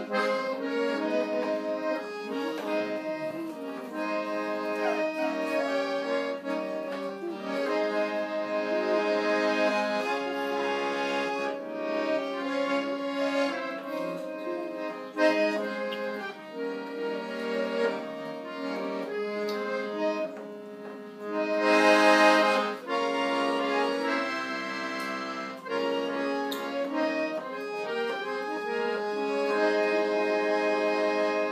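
Red piano accordion played solo: a melody of sustained reedy notes over held chords, changing note continuously. There is a brief louder swell about two-thirds of the way through.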